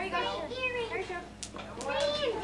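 Children's voices chattering and calling over one another, with two short clicks near the end.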